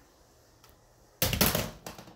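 Handling noise from a phone being moved by hand: after a quiet second, a brief loud burst of rubbing and clicking knocks against the microphone.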